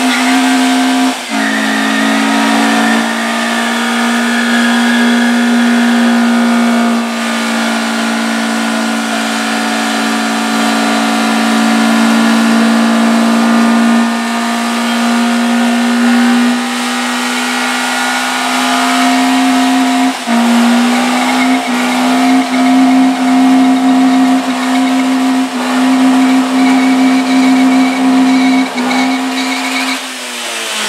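Car engine held at high, steady revs while the tyres spin in a burnout, with tyre hiss under it. About two-thirds of the way through the revs drop a little and then rise and fall roughly once a second.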